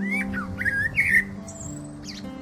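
Background music with sustained low notes, with a run of short, quick bird calls over it in the first second or so and a thin high whistle near the end.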